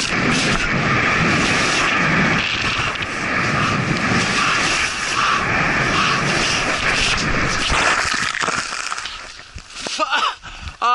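Wind buffeting the microphone with skis hissing through snow on a fast downhill run. The sound dies away near the end as the skier slows down.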